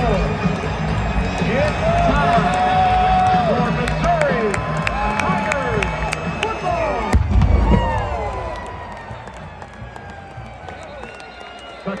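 Stadium crowd cheering and yelling through a football kickoff, then a single loud cannon shot about seven seconds in, after which the cheering dies down.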